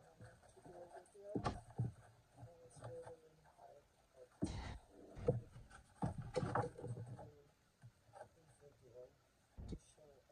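A handmade paper gift bag being handled: paper rustling and crinkling with several short knocks against the desk, the loudest a little before and just after the middle, as the bag is lifted and then set down upright.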